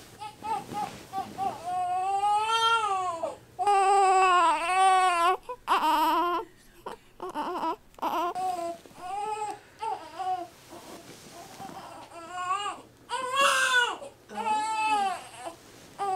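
Newborn baby crying: a string of wailing cries, each rising and falling in pitch, with short catches of breath between them. The loudest cries come a few seconds in and again about three-quarters of the way through.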